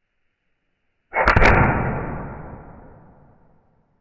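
A single shot from a .44 Magnum replica pellet revolver about a second in: a sudden sharp crack followed by a long tail that fades away over about two seconds.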